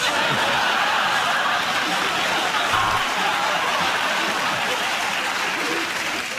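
Studio audience laughing and applauding together, starting suddenly and holding steady before easing off near the end.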